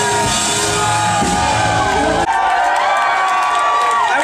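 Live rock band with vocals playing. About two seconds in, the bass and drums cut off suddenly, and the audience cheers and whoops over held notes.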